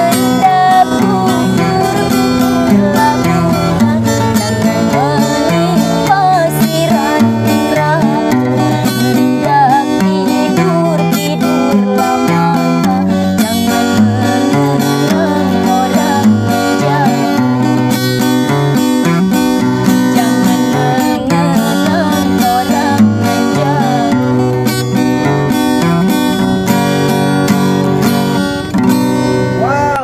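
A woman singing a song to the accompaniment of an acoustic guitar strummed and picked by a man. The song comes to its close near the end.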